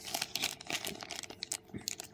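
Clear plastic pouch crinkling and crackling as it is handled, a quick irregular run of small crackles.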